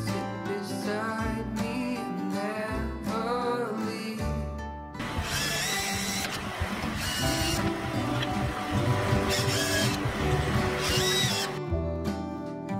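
Background music plays throughout; from about five seconds in, a cordless drill runs several times over it, driving screws into small rosewood bearers, its motor whine rising and falling.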